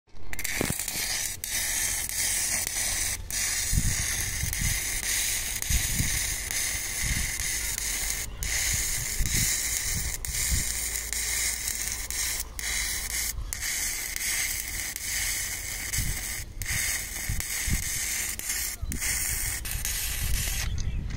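Electric arc welding on a steel rail: the arc crackles and sizzles steadily, cutting out briefly a few times, as weld metal is built up on worn, damaged rail edges.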